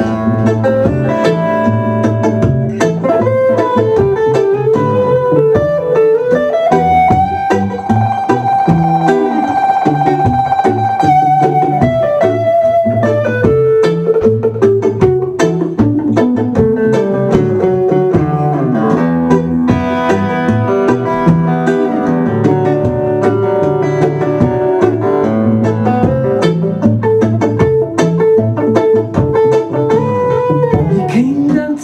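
Acoustic guitar played live in an instrumental break, a continuous run of picked and strummed notes over moving bass notes, with a long held high note about a third of the way in.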